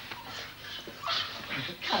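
A boy whimpering while he is pinned to the floor in a scuffle.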